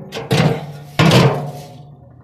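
A brick knocking against the stainless-steel drum of a front-loading washing machine as it is set down inside: a few clunks, the loudest about a second in, each followed by the drum ringing and dying away.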